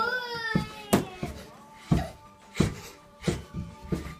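A toddler bouncing on a small handlebar toddler trampoline: about six dull thumps, roughly one a second. A drawn-out 'ooh' from a voice opens it.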